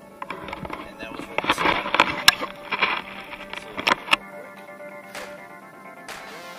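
An Arrma Talion RC truggy speeding past on asphalt: a rush of tyre and motor noise with clicks that builds to its loudest about two seconds in and is gone by about four seconds, over electronic background music.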